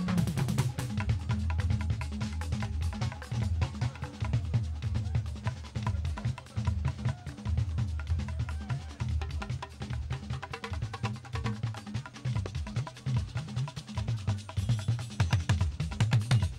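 A live Fuji band playing an instrumental stretch without vocals: busy drums and percussion, struck rapidly throughout, over a low bass line.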